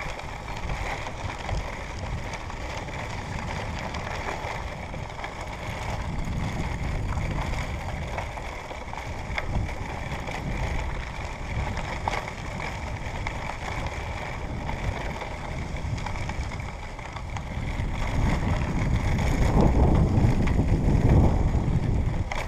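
Wind rumbling on the microphone of a moving camera, mixed with the noise of tyres rolling over a gravel dirt road. It is steady and grows louder near the end.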